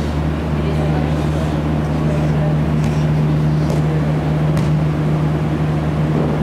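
A steady low hum fills the futsal hall, with a few sharp knocks of the ball being kicked on the court, about three in the middle of the stretch, and faint distant voices.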